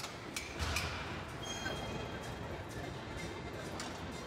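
Metal clanks of a loaded Smith machine barbell, one with a low thump about half a second in and another near the end, over a steady background of gym voices and music.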